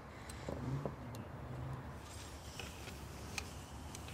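Quiet outdoor background with a steady low rumble and a few short faint clicks, and a faint low hum in the first second and a half.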